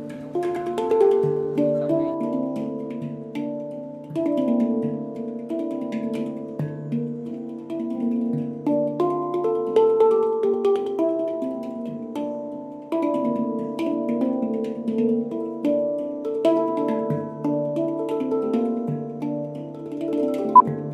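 Handpan played by hand: a continuous melodic run of struck steel notes that ring on, over a recurring low note.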